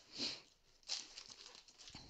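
Large diamond-painting canvas and its white sheet being handled and lifted, rustling and crinkling faintly, with two brief louder rustles, one just after the start and one about a second in.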